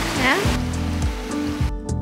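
Rushing creek water with a brief voice near the start, over background music. The water noise fades out during the second half, leaving the music.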